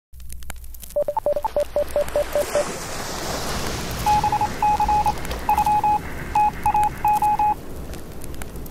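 Electronic beeping over a steady hiss: a quick run of short beeps on one low pitch in the first seconds, then, from about four seconds in until shortly before the end, irregular groups of short beeps on a higher pitch.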